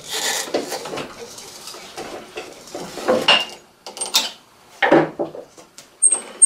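Drive belt and metal pulleys of a King 10x22 lathe being worked by hand to change the belt: irregular rubbing and scraping, with a few sharp clicks about three, four and five seconds in.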